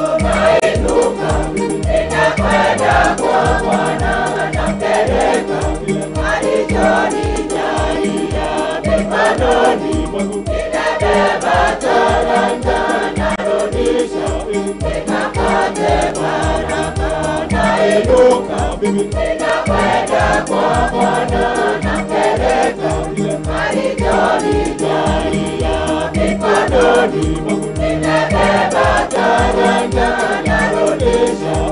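A church choir singing a lively hymn in unison to a steady drum beat of about two strokes a second.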